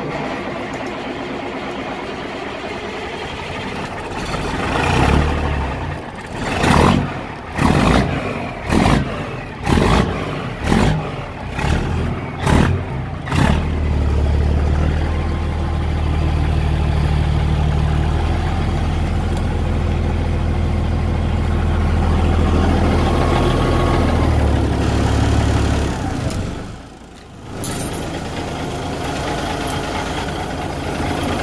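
Caterpillar 3406B inline-six diesel in a Freightliner FLD 120 semi truck starting up. It is revved in about eight quick blips roughly a second apart, then settles into a steady, deep idle.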